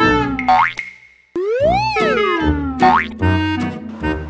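Children's background music with boing-like sound effects. Twice, a pitch glides up and back down, each time followed by a quick rising sweep. The music drops out briefly a little after a second in.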